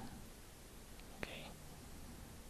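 Very quiet room tone with a faint click about a second in and a sharper click just after it, followed by a soft breath.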